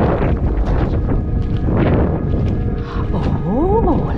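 Wind buffeting the microphone, with background music. Near the end a person's voice rises in pitch in one short drawn-out call.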